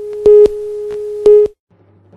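A steady electronic tone with two short, much louder beeps about a second apart; it cuts off suddenly about a second and a half in.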